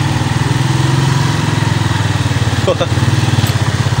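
Small motorcycle engine idling close by, with a steady rapid even pulse.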